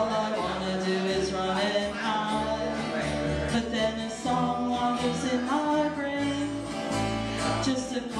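Acoustic duo playing live: strummed acoustic guitar and an acoustic bass guitar laying down low notes that change about once a second, with a held melody line over them.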